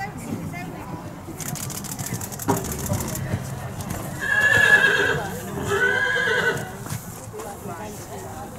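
A horse whinnying twice, each call about a second long and the loudest sound, over the hoofbeats of a horse cantering on the sand arena. A single sharp knock comes about two and a half seconds in.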